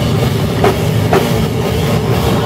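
Live stoner metal band playing loud: distorted electric guitars and bass over a drum kit, with two sharp drum hits about half a second apart near the middle.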